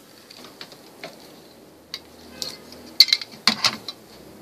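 Light clicks and metallic taps of a hard-drive cage being handled and pulled from an all-in-one computer's sheet-metal chassis, with a cluster of sharper clicks about three seconds in.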